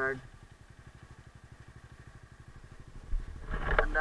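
Bajaj Dominar 250's single-cylinder engine idling at a standstill, an even, steady putter. A brief low rumble comes about three seconds in.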